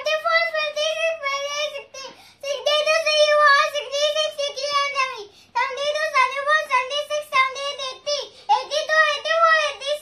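A young boy reciting numbers rapidly in a high, sing-song chant on a nearly level pitch, with two brief breaths for pauses, about 2 and 5.5 seconds in.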